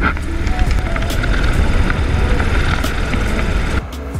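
Helicopter noise with wind rushing over the camera's microphone, a loud, dense rumble and hiss from an open-sided helicopter in flight. It stops abruptly near the end.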